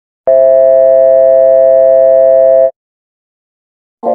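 A loud, steady electronic tone with many overtones, starting about a quarter second in, held for about two and a half seconds and cutting off suddenly.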